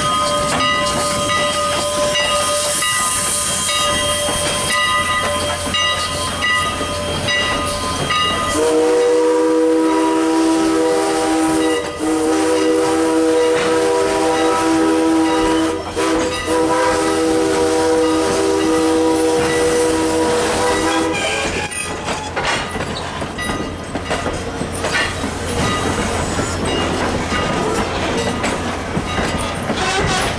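Steam locomotive whistle blowing long, steady chords: a higher chord for about eight seconds, then a lower chord held for about twelve more before it cuts off. The train then rolls on, its coaches rumbling and clicking along the rails.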